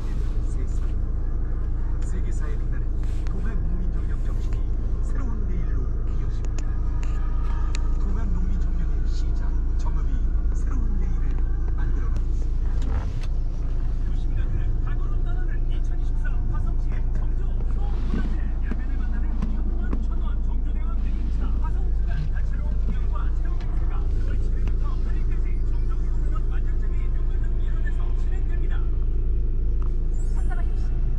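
A car's engine idling with a steady low hum, heard inside the cabin, while a radio plays talk and music faintly over it.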